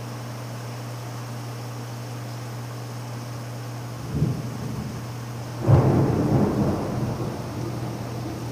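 Thunder from a storm with nearby lightning strikes: a first rumble about four seconds in, then a sudden, louder roll about a second and a half later that slowly dies away, over a steady low hum.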